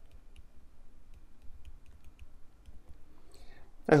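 Faint, irregular light ticks of a stylus tapping and moving on a pen tablet as a word is handwritten, over a low background hum.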